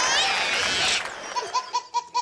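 Dense laughter that cuts off abruptly about a second in, followed by a single high-pitched laugh in quick repeated 'ha' bursts, about five a second.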